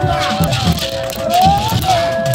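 Music with a steady drum beat and a rattle or shaker. A held melodic line runs over it and slides up in pitch about one and a half seconds in.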